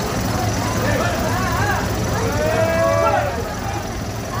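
Fairground crowd: people's voices calling and chattering, one drawn-out call standing out about two and a half seconds in, over a steady low machine hum.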